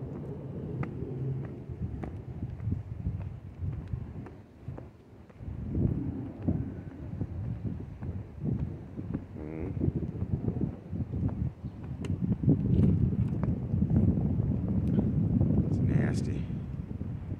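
Footsteps going down concrete steps, with wind noise on the microphone that grows louder over the last few seconds.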